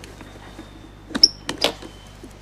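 Clasps of a small metal case snapping open: three sharp metallic clicks a little past a second in, the first with a brief high ring.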